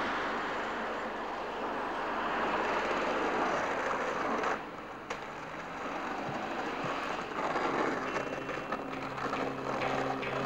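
Skateboard wheels rolling on pavement, a steady rolling noise with a few faint clicks. Music fades in near the end.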